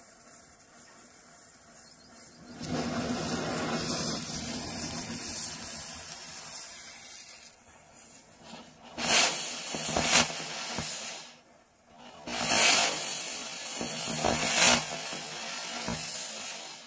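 Matchsticks flaring along a chain with a steady hiss, then small firecrackers in the line catching and spraying sparks in two louder spells of hissing, each with sharp peaks.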